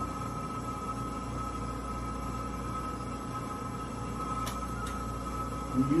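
A steady electronic drone: a constant high tone over a low hum, with two faint clicks close together about four and a half seconds in.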